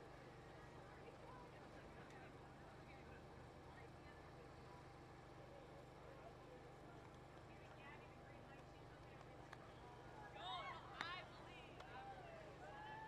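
Near silence: faint outdoor ambience with a low steady hum, and faint voices about ten seconds in.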